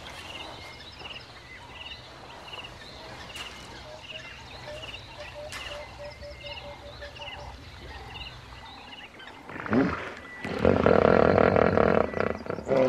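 Plovers calling with short trilling notes, about two a second, over a low steady hum. About ten seconds in, a hippo lets out a loud, deep grunting call.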